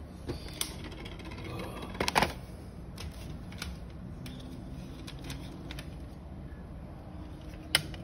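Plastic CD jewel cases being handled: a few scattered clicks and clacks, with a sharp pair of clicks near the end as a case is opened, over a low steady hum.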